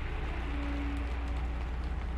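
Steady rain ambience with a deep, constant rumble underneath.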